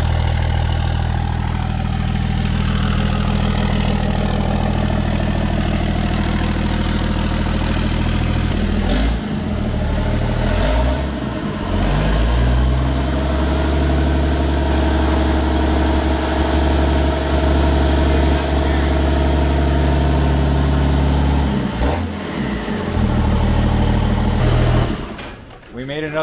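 Turbocharged 6.7-litre Cummins inline-six diesel idling steadily, newly swapped in and running with no exhaust fitted yet. The engine note shifts a couple of times and stops shortly before the end.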